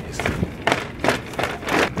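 Shopping cart being pushed along, making a loud, uneven noise as it rolls, rising and falling in irregular bursts.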